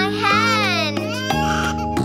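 A cartoon baby crying in one long wavering cry for about the first second, over cheerful children's background music.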